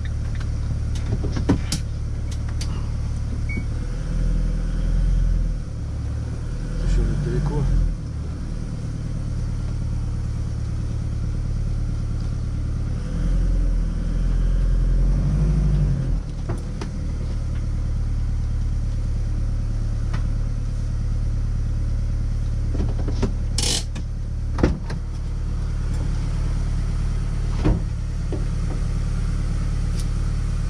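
A motorhome's engine running at a low idle with a steady rumble, swelling twice as the vehicle creeps forward. A few sharp clicks stand out, the loudest about three quarters of the way through.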